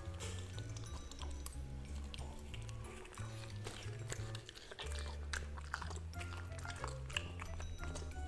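Golden retriever puppy chewing a slice of tomato: a run of short, sharp, wet chewing clicks close to the microphone, over background music with a steady bass line.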